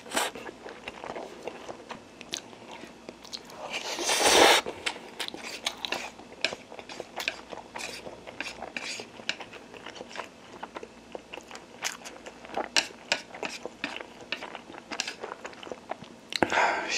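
A person eating Indomie instant noodles close to the microphone: wet mouth clicks and chewing sounds throughout, with one longer, louder slurp about four seconds in.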